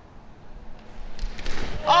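A few light knocks from the pitched hollow plastic Blitzball about a second in, then a man exclaiming 'Oh' near the end.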